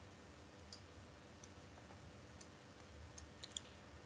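Near silence: faint room tone with a few soft clicks, two close together near the end.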